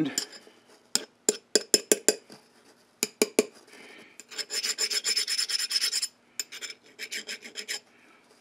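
Hand file scraped across a case-hardened steel tool end: a series of short strokes, a longer rasp about halfway through, then more short strokes. The file skates without biting, the sign of an almost glass-hard case-hardened surface.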